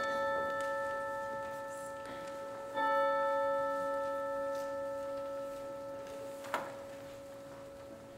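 A bell-like musical note struck at the start and again about three seconds in, each time ringing and slowly fading; a brief sharp click near the end.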